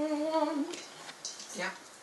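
A voice humming one long steady note that stops less than a second in, followed by a short spoken word.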